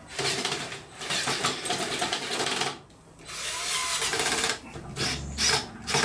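Cordless drill running in bursts as it tightens hose clips on an air hose. There is one run of about two and a half seconds, a shorter run a little after three seconds in, and a few brief bursts near the end.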